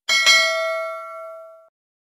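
Notification-bell "ding" sound effect, struck twice in quick succession, then ringing and fading for about a second and a half before cutting off abruptly.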